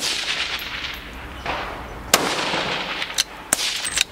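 Rifle shot from a .223 Remington bolt-action rifle fitted with a muzzle brake: a sharp crack at the start with a long echoing tail. A second crack follows about two seconds in, and lighter clicks come near the end.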